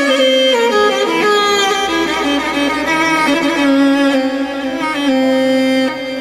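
Instrumental interlude of live Arabic wedding music: an ornamented, violin-like melody played on a stage keyboard over a steady accompaniment.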